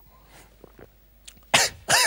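A man coughs harshly twice, about a second and a half in, after knocking back a shot of Doppelkorn grain spirit.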